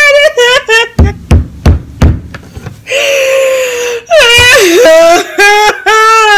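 A girl's exaggerated fake crying: high, wavering wailing sobs with one longer breathy cry in the middle. A few dull thumps come about a second in.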